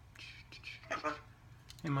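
African grey parrot mumbling soft, whispery speech-like sounds, with a short voiced syllable about a second in. Near the end it starts a louder spoken word.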